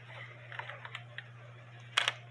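Faint small clicks and taps of fingers handling the wooden front of a cuckoo clock near its little door, with one sharp, louder click near the end, over a steady low hum.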